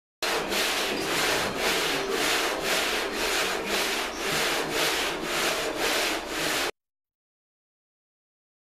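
Sandpaper on a hand sanding block rubbed back and forth over a car body panel, in even strokes of about two to three a second. It starts just after the beginning and cuts off abruptly near the end.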